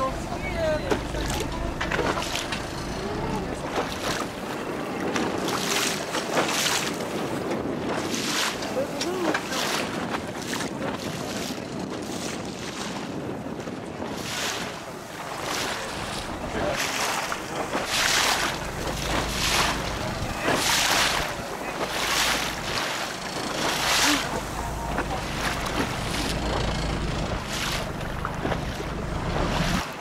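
Choppy sea water slapping and splashing against a small boat's hull in irregular strokes, about one every second or two, with wind buffeting the microphone.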